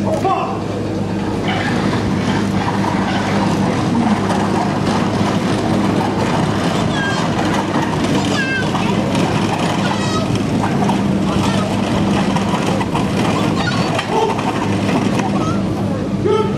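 Wooden-spoked, metal-rimmed wheels of a field gun and limber rumbling steadily over concrete as the crew haul them on drag ropes, with the crew's footsteps.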